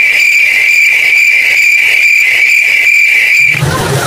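A loud, steady high-pitched tone with a faint pulsing a little over twice a second, starting suddenly and cutting off shortly before the end: an edited-in sound effect.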